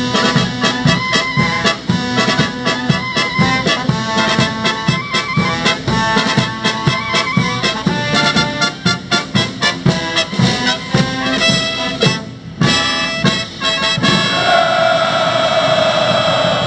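Military brass band playing an instrumental passage on a steady beat. It closes on a long held chord in the last couple of seconds.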